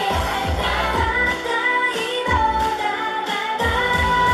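K-pop girl group singing live, several female voices over a pop backing track with a steady beat, heard through the concert PA. The bass and beat drop out for a moment shortly before the end, then come back.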